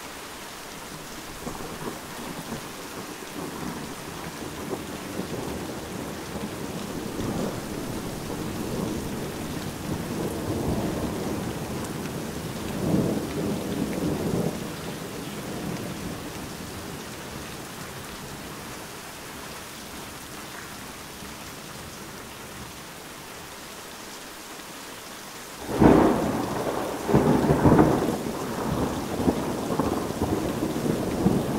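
Steady heavy rain with thunder. A long rolling rumble of thunder builds and fades over the first half, then a sudden loud thunderclap near the end rolls on in rumbles.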